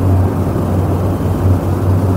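A steady low electrical hum with a constant background rush of noise, the background of an old speech recording.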